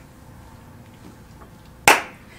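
A single sharp hand clap near the end, after a quiet stretch of room tone.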